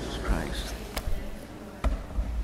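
Low voices and movement in a church, with two sharp knocks a little under a second apart, one about midway and one near the end.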